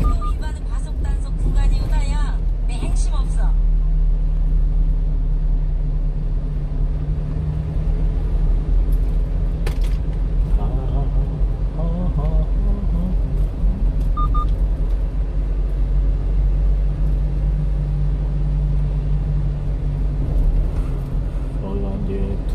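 Steady low drone of a small truck's engine and road noise heard inside the cab while it drives slowly in city traffic, with faint voices at times.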